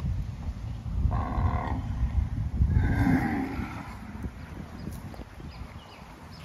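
Young Brahman-cross calf bawling twice, two short calls a little over a second apart.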